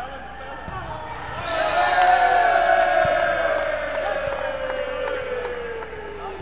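Volleyball being struck with sharp thuds while players and spectators shout. A loud cheer swells up about a second and a half in and slowly fades away.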